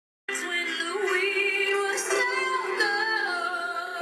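A woman singing long held notes with a wavering vibrato, played back through a computer's speakers and picked up by a phone.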